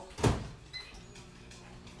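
A door shutting with a single loud clunk about a quarter of a second in, followed by a faint steady low hum.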